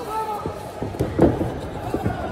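Voices calling out, with a few dull thuds from wrestlers moving and landing on the wrestling ring's mat. The clearest thud comes a little past halfway.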